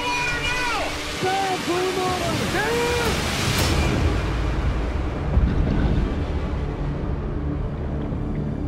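Wavering pitched tones that rise and fall over rough-sea noise. About three and a half seconds in, a rushing splash gives way to a low, muffled underwater rumble of churning seawater.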